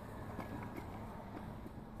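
Faint rubbing of wet #0000 steel wool scrubbing soapy window glass by hand, with a few light ticks.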